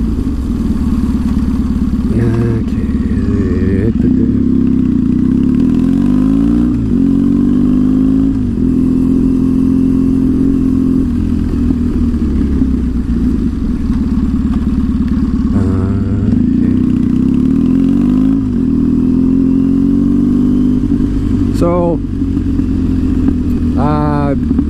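Triumph Thruxton's parallel-twin engine running steadily under way. Its pitch drops and climbs again a few times as it changes gear.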